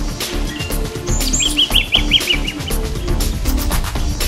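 Eastern yellow robin calling: a quick run of about seven short, repeated notes a little over a second in, just after a couple of brief high whistles, over background music.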